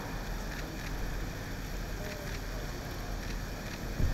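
Outdoor ambience: a steady low rumble of wind on the microphone, with a few faint, scattered clicks.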